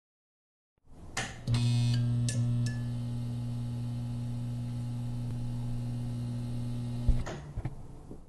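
Logo intro sting: a click and a short glitchy crackle open a steady low electronic drone. The drone holds for about six seconds, then cuts off with a thump and fades away.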